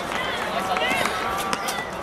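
Many voices talking and calling at once, overlapping chatter of young players and spectators with no single clear speaker, and a few sharp clicks.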